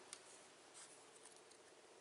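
Near silence: faint room hiss with a couple of very soft rustles.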